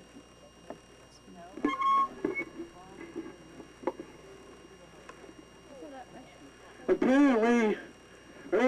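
Two loud, drawn-out shouted calls from a person near the end, with scattered faint shouts and voices earlier.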